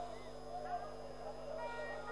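Stadium crowd voices from the stands, a steady mass of overlapping shouting and chanting, over a faint steady broadcast hum.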